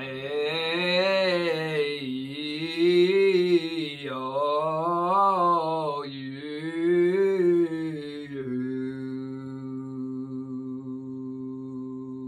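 Male voice singing four rising-and-falling scale runs over a held keyboard chord rooted on C3. After about eight and a half seconds the voice stops and the chord is left ringing, slowly fading.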